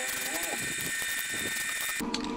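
Aerosol spray-paint can spraying in one long, steady hiss.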